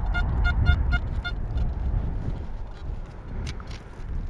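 XP Deus metal detector beeping as the coil sweeps over a buried target that reads 84 on the display: short high-pitched beeps, about four a second, that stop about a second and a half in. Wind rumbles on the microphone throughout.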